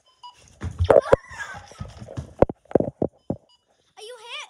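About six sharp knocks and thumps, irregularly spaced, with rustling in between.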